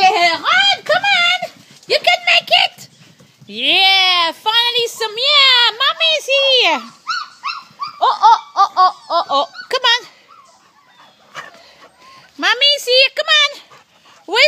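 Labrador puppies whining and yelping in repeated high-pitched cries, with one longer rising and falling cry a few seconds in and a quieter gap about two-thirds of the way through.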